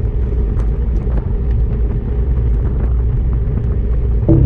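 Wind rumble and tyre noise from a bicycle-mounted camera riding on asphalt at about 33 km/h, a steady deep rush with a few faint ticks.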